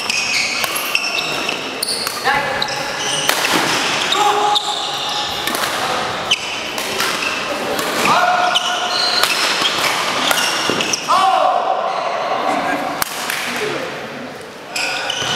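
Badminton rally in a sports hall: sharp racket strikes on the shuttlecock, with shoes squeaking on the court floor as the players lunge, echoing in the hall. The rally ends near the end.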